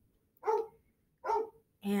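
A dog barking twice, two short, separate barks.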